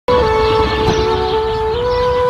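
A held, horn-like tone over a low rumble, shifting slightly in pitch a few times.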